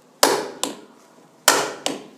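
Hammer blows on a steel pipe set over a wall fan's rotor, driving the rotor down off its worn shaft: four sharp metallic strikes in two pairs, each with a short ringing decay.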